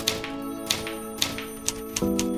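Manual typebar typewriter keys striking, sharp uneven clacks about four a second, over soft background music with held chords.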